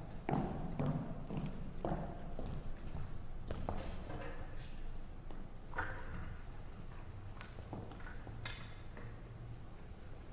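Footsteps and scattered knocks of a performer walking across a wooden concert stage, uneven and denser in the first few seconds, then a few sparse shuffles over a low steady hall hum.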